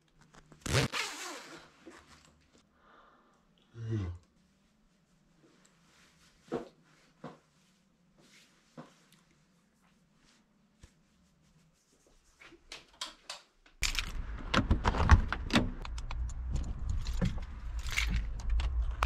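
A hoodie zip pulled up about a second in, followed by a dull thud and a few faint clicks and knocks. Near the end a loud low rumble with knocks and rustling starts suddenly inside a car.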